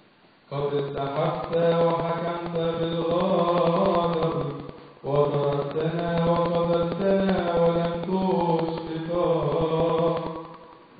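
A man's solo voice chanting Coptic Orthodox liturgy in long phrases of held, wavering notes. A first phrase begins about half a second in, and a second begins after a short breath about five seconds in.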